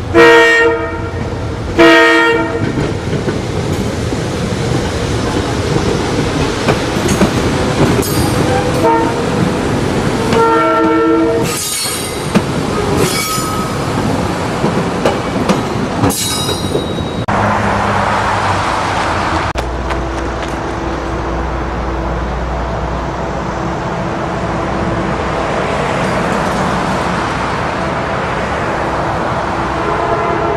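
SEPTA electric multiple-unit commuter train sounding its air horn as it approaches: two blasts at the start, then a short and a longer blast about ten seconds in. It then passes with wheels clicking over rail joints and brief high wheel squeals. About twenty seconds in, the sound turns to a steadier low rumble.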